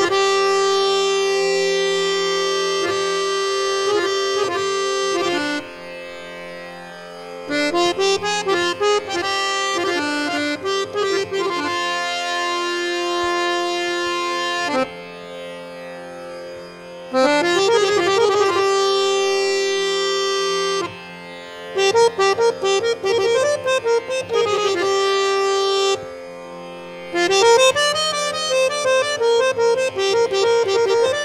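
Samvadini (Indian harmonium) playing a Hindustani classical solo, with tabla accompaniment. Long held reed notes alternate with fast melodic runs, in phrases broken by four brief, softer pauses of a second or two.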